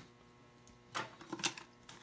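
A few light clicks and rustles of small objects being handled on a workbench, starting about a second in and coming again near the end.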